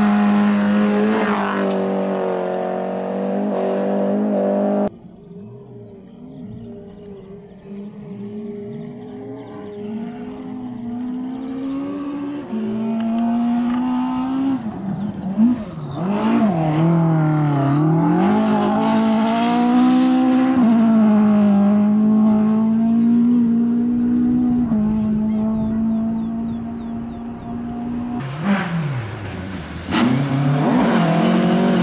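Rally car engines at high revs on a gravel stage, one car after another with abrupt cuts between them. A Volvo 240 rally car holds a steady note at full throttle for the first few seconds; after a sudden cut a car is heard growing louder as it approaches. From about halfway an Opel Corsa rally car's engine dips and rises in pitch as it lifts off and accelerates, then runs steadily near the end.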